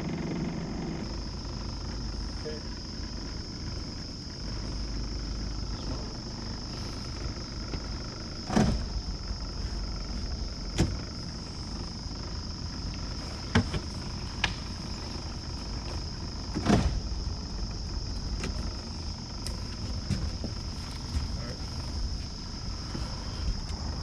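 Electric bow-mounted trolling motor running steadily, with a low hum and a thin, steady high whine. A handful of short, sharp knocks stand out over it, most of them in the middle of the stretch.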